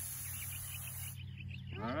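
Garden hose spray nozzle hissing as it waters the base of a pepper plant, cutting off just over a second in. A low steady hum runs underneath.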